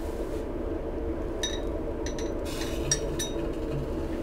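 A few light, ringing clinks of laboratory glassware, grouped through the middle of the stretch, over the steady hum of a fume-hood extraction fan.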